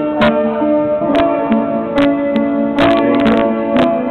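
Piano being played: a melody of held notes over chords, with new notes struck about every half second to a second.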